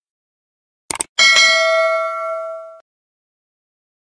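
Subscribe-button animation sound effects: a short mouse click about a second in, then a bell ding that rings for about a second and a half and cuts off abruptly.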